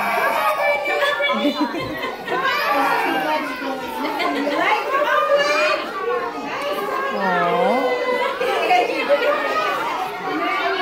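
Many overlapping voices of small children and adults chattering and calling out, with no single voice standing out.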